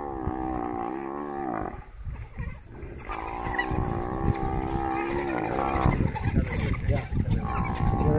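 An African buffalo bellowing in distress while a wild dog pack bites it. There are three long, drawn-out calls, each with a short break between them.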